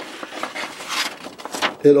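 Paper pages of a service manual rustling as they are leafed through by hand, with sharper swishes about a second in and again shortly after.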